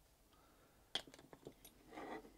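Light handling clicks of a liquid-cement brush cap and plastic model parts: one sharp click about a second in, a few quicker lighter ticks after it, then a soft rustle near the end.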